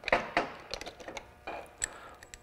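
Light clicks and taps of small plasma-torch consumables being handled: a copper electrode being fitted into its nozzle and parts knocking against the plastic consumable kit case. The clicks come irregularly, with a sharper one near the end.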